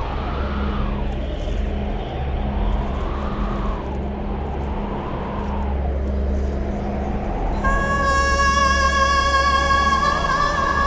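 Wind sound effect: a low steady rumble with gusts of whooshing noise that swell and fade every two to three seconds. Near the end, background music with high sustained tones comes in over it.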